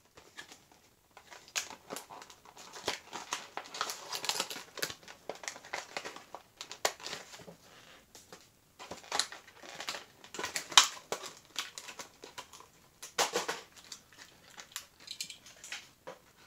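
Plastic packaging being crinkled and handled, in irregular crackling bursts with brief pauses.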